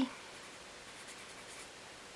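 Felt-tip marker pen writing on paper: faint, light scratchy strokes, grouped in the middle as a word is written.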